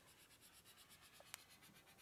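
Faint dry-erase marker rubbing on a whiteboard as a line is drawn, with one small tick partway through.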